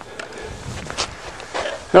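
Low background noise with faint shuffling and a few light clicks, the sharpest about a second in; the engine is not running.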